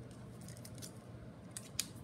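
Pen writing on notebook paper: a few faint, short scratchy strokes, then a couple of sharper ticks near the end.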